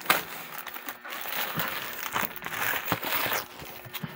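Plastic mailer bag crinkling and rustling as a cardboard box wrapped in packing tape is slid out of it, with small irregular crackles.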